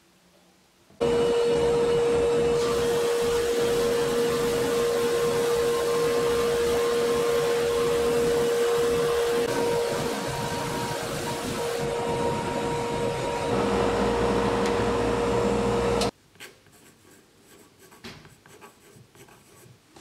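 Drum sander running with its dust collection as a quilted maple neck blank feeds through on the conveyor: a loud, steady noise with a steady whining tone. It starts suddenly about a second in, a deeper rumble joins for its last couple of seconds, and it stops abruptly, leaving only a few small handling clicks.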